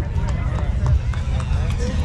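Crowd murmur: scattered voices talking quietly over a steady low rumble, with a few short clicks.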